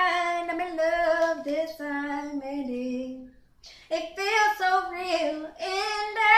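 A female voice singing unaccompanied in long held phrases, breaking off for a moment a little past halfway and then starting a new phrase.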